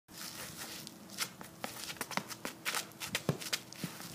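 Shoes scuffing and stepping on a concrete shot put circle as a thrower moves through a shot put throw: a run of irregular scrapes and clicks.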